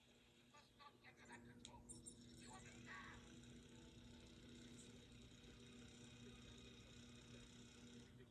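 Near silence: a faint steady hum with faint indistinct sounds beneath it.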